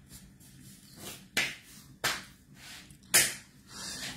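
Three short breathy hisses from a person pausing between sentences: sharp breaths or sniffs, about a second and a half in, at two seconds, and just after three seconds.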